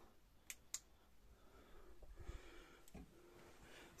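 Near silence: room tone, with two faint clicks about half a second in.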